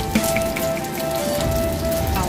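Egg frying inside onion rings in a small pan: a steady sizzle with fine crackling, under background music playing a simple stepped melody.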